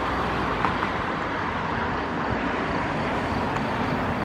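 Steady outdoor background noise of distant road traffic, an even hiss and rumble without a break, with a faint short click about two-thirds of a second in.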